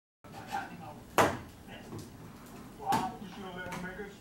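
Two sharp knocks, a loud one about a second in and a second one near three seconds, over quiet talking.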